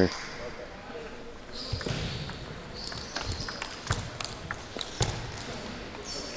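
Table tennis ball clicking off the rackets and the table in a short rally after a short serve and a push, a handful of sharp ticks spaced roughly half a second to a second apart, over faint hall hiss.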